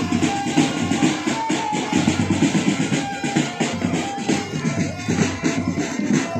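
Marching drum band playing: a steady, fast drum rhythm with short melody notes over it.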